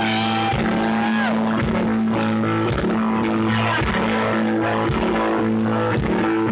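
Live rock band with electric guitar, bass and drums playing an instrumental passage, with no vocals.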